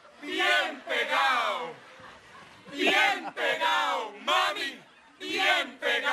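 A group of voices shouting short phrases together in unison, in the rhythm of choral poetry. The phrases come in pairs of short bursts with brief pauses between them.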